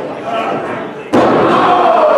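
A single loud slam on the wrestling ring about a second in, followed by voices, including one long call that falls in pitch.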